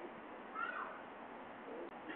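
A single short animal call, rising then falling in pitch, about half a second in, over faint steady background noise.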